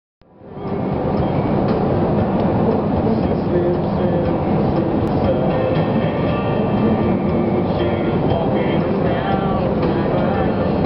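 Steady road and engine rumble inside a car cabin at highway speed, fading in over the first second, with country music playing in the background.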